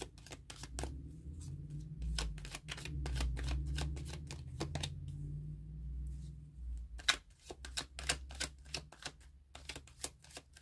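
Tarot cards being shuffled and handled, then a card set down on a table: runs of quick crisp card clicks, densest near the start and again about seven seconds in, with a low handling rumble in between.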